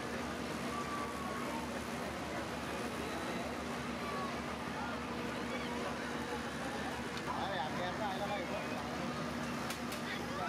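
Busy outdoor crowd babble over a steady low hum, with hot oil sizzling in a large wok as giant papads fry.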